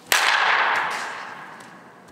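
A softball bat hitting a softball: one sharp crack about a tenth of a second in, echoing through an indoor batting facility and dying away over about a second and a half.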